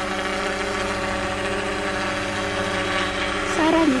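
Unmanned crop-spraying helicopter's engine and rotor running steadily at one unchanging pitch as it flies a spraying pass.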